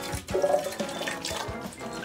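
Juice pouring from a glass conical flask, a steady run of liquid, with background music underneath.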